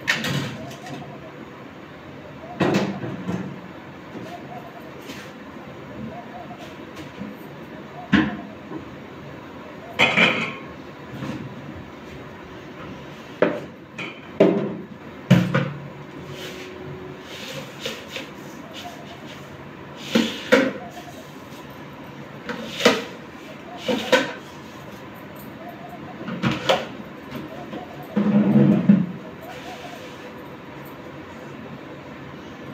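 Kitchen utensils being handled on a counter: about a dozen separate knocks and clinks of pots, lids and jars being picked up and set down, irregularly spaced, over a steady low background hum.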